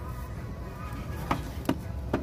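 Handling clatter of a plastic Fisher-Price toy movie viewer being picked up off a shelf: light knocks, with two sharp clicks about a second and a half in.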